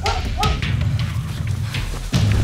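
A dog giving a couple of short yips about half a second in, over a steady low rustling noise.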